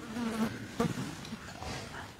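A man's brief low hum, then a few soft clicks and rustles close to a clip-on microphone.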